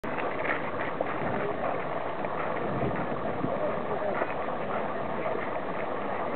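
Indistinct chatter of a crowd, many voices talking at once over a steady background noise.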